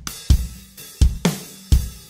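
Chorus groove of a recorded acoustic drum kit loop: heavy kick and snare strokes roughly every half second under a big open hi-hat that rings on between hits.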